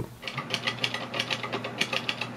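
Brother portable typewriter being typed on: a fast, steady run of key strikes clacking against the platen.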